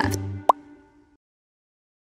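Background music fading out over about a second, with one short rising blip about half a second in, followed by about a second of dead digital silence.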